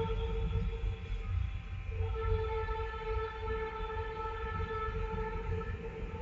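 A steady pitched tone with overtones, held for several seconds with a short break about a second in, over a low background rumble.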